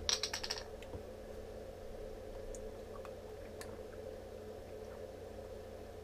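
Plastic screw cap of a small water bottle twisted open: a quick run of sharp clicks in the first half-second as the tamper ring snaps. A few faint taps follow over a steady low hum.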